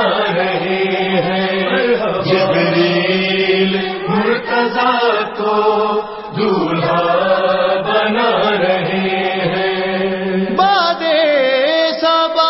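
Voices chanting a devotional Urdu manqabat over a steady low drone, with no clear words. About ten and a half seconds in, a higher voice comes in with a wavering, ornamented line.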